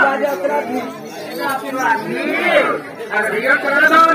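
Speech: performers' voices talking, with one voice sweeping up and then down in pitch about two seconds in.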